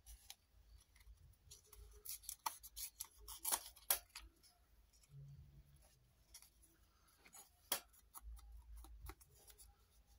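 Craft paper being handled and crinkled on a cutting mat: a scatter of sharp crackles and clicks, densest a couple of seconds in, with one loud click near the end.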